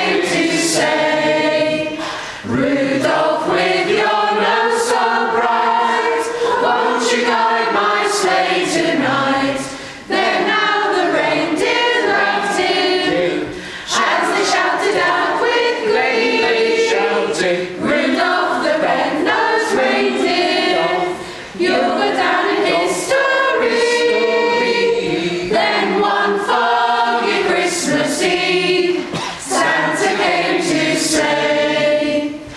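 Mixed choir of men and women singing, phrase after phrase with brief pauses for breath between them.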